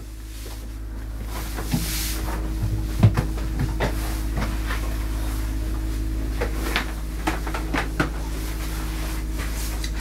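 Scattered knocks and clicks as grooming equipment is picked up and handled on the shelves and table, the sharpest about three seconds in. A steady low hum runs underneath.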